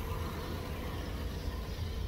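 Steady low outdoor rumble and hiss with no distinct event.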